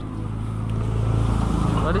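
Low, steady rumbling noise that swells from about a second in; a child's voice starts near the end.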